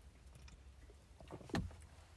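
Faint sounds of a man drinking from an aluminium can of seltzer, with one short, soft gulp about a second and a half in, over a low steady hum.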